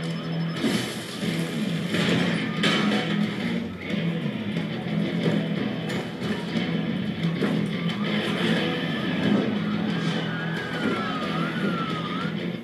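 Action film score with electric guitar over a steady low held note, with a few sharp hits in the first few seconds, played back from a screen.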